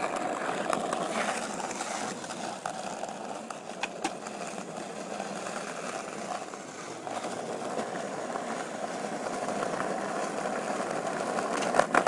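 Skateboard wheels rolling on rough concrete, a steady grinding rumble, with a few sharp clacks of the board along the way.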